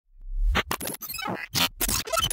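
Electronic intro sting with glitchy, scratch-like stutters: a deep swell builds over the first half second, then the sound is chopped into short bursts that cut in and out abruptly.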